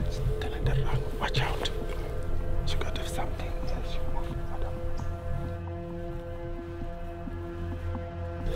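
Quiet, whispered-sounding speech over a steady background music drone of several held notes.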